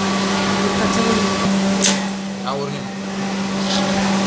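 SMITH SM 5490-7BQ industrial lockstitch sewing machine running with a steady hum and a higher whine. The whine stops about a second and a half in. A short sharp hiss follows just before the two-second mark.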